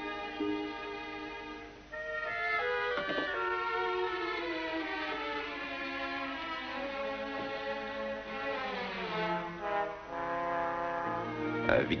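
Orchestral background score of held string chords with brass. About two seconds in, a fuller, louder chord enters, and the lines slide downward in pitch shortly before the end.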